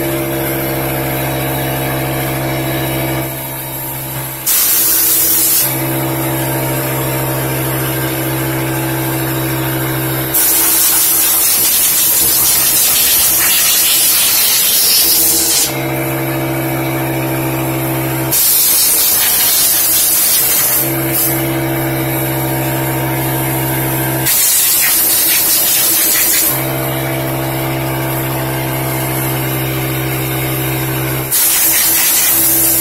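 Compressed-air blow gun blowing out a Pfaff Hobbylock 788 serger, in four bursts of loud hissing air, the longest about five seconds. Between the bursts a steady low mechanical hum runs.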